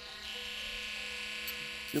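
Small handheld rotary tool (mini drill) with a small sanding disc running steadily, a constant electric motor whine, used to carve and thin the tip of a metal calligraphy pen.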